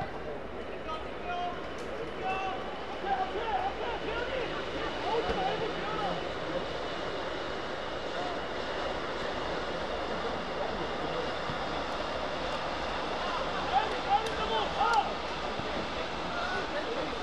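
Youth football players calling out to each other on the pitch over a steady background rumble, with a few louder shouts near the end.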